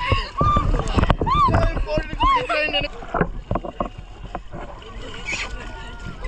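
Splashing river water with excited shrieks and shouts that rise and fall in pitch during the first half. The second half is quieter, mostly water sloshing and splashing.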